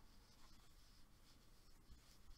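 Near silence with the faint, repeated scratching of yarn drawn over a crochet hook as stitches are worked.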